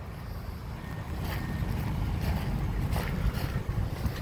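Wind buffeting a phone microphone outdoors: a steady low rumble that grows a little louder about a second in, with a few faint knocks.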